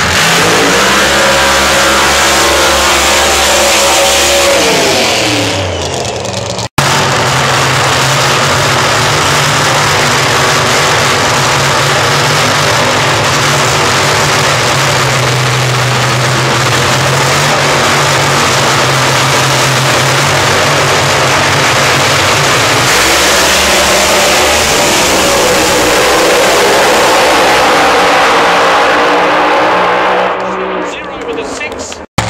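Supercharged V8 drag-racing engines. A revving run falls away about five seconds in. After a brief cutout, the engines run loudly and steadily at the start line, then launch about 23 seconds in with the pitch climbing as the cars pull away down the strip.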